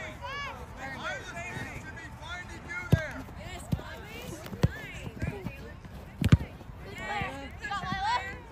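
Soccer ball being kicked on artificial turf: several sharp thuds, the loudest about six seconds in, among voices calling out across the field.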